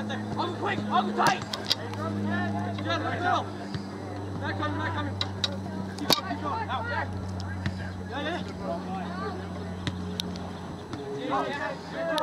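Players and spectators calling and shouting across a soccer field, too distant for words, over a steady low hum. A few sharp knocks cut through, the loudest about six seconds in.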